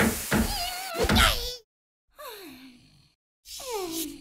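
Cartoon sound effects: a couple of mallet thunks in the first second and a half, with wavering high tones, then two whining sounds that each slide down in pitch, separated by brief silences.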